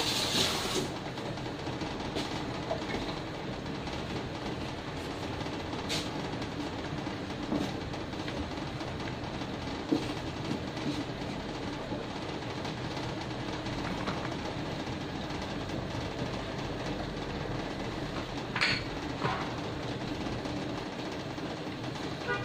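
Diced onion sizzling steadily in olive oil in a nonstick frying pan as it softens, with a few light knocks of a wooden spatula stirring it.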